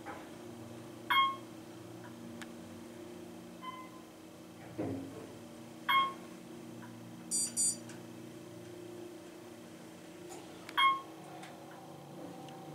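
Otis hydraulic elevator in travel: a steady low hum under three clear single-pitched chime pings, about five seconds apart. A soft thump comes about five seconds in, and a quick high double beep a little after the middle.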